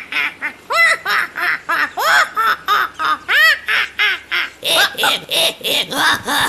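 Cartoon parrot squawking in a quick run of short, cackling calls, about three a second, each rising and falling in pitch. The calls grow higher and raspier near the end.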